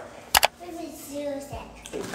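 A short, sharp double click, followed by quiet voices in the background.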